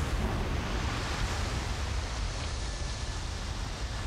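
Glacier ice front calving and collapsing into the sea: a steady, deep rumble under a hiss of falling ice and spray.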